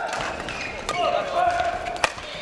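Badminton rally in a sports hall: light racket hits on the shuttlecock, with voices carrying through the hall and a held high-pitched sound through the second half.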